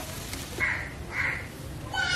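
Meat frying in a pan, with a spatula click in the first half second. Then two short rasping animal calls, about half a second apart.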